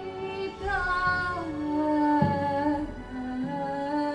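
A woman singing a slow melody unaccompanied, holding long notes that glide between pitches, with one low frame-drum beat about halfway through.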